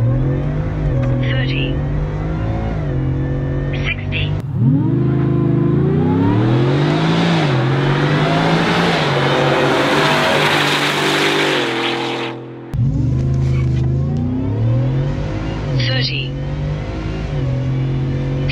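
Whipple-supercharged 5.0 L Coyote V8 of a Ford F-150 accelerating at full throttle, its pitch climbing through each gear and dropping back at every upshift. It is heard from inside the cab at first and again near the end. In between, from about four seconds in to about twelve, the truck is heard louder and harsher from outside as it accelerates past.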